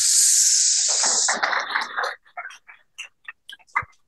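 Audience applauding: a dense spell of clapping for about the first second and a half that thins out into a few scattered single claps.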